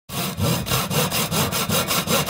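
Intro sound effect of rapid, even sawing strokes, a rasping back-and-forth noise repeating several times a second.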